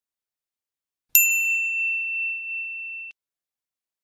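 One bright bell ding from a subscribe-animation notification-bell sound effect, struck about a second in and ringing for about two seconds before cutting off abruptly.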